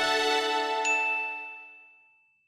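Logo-sting jingle: a sustained chord fading out, with a bright chime ding a little under a second in that keeps ringing as the whole sound dies away.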